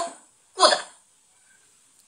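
Speech: a single short spoken word, "good", with a falling pitch, about half a second in.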